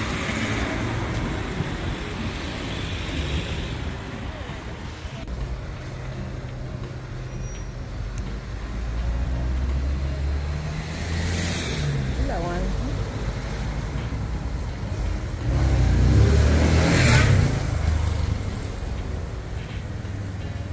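Street traffic: cars driving past on a town street, a steady low rumble with two vehicles passing close, the second, about three-quarters of the way through, the loudest.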